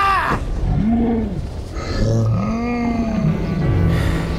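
Two long, low calls from the dragon Toothless, each rising and then falling in pitch, over orchestral film music.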